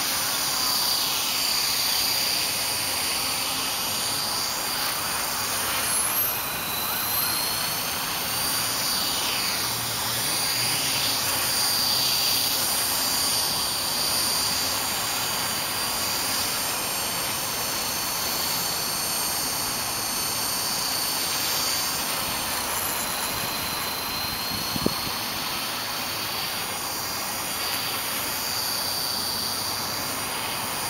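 Electric 450-size RC helicopter (EXI-450) hovering low: a steady high whine from the motor and gears over the whoosh of the rotor blades, its pitch rising and falling as the throttle changes. A single sharp knock sounds near the end.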